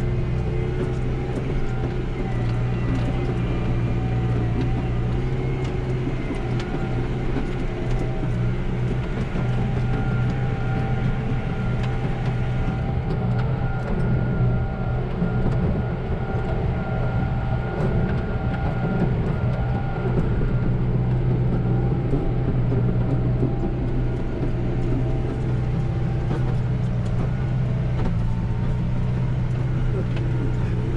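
McCormick MC130 tractor engine running steadily under load, heard from inside its cab, as it pulls a 32-disc harrow through the field.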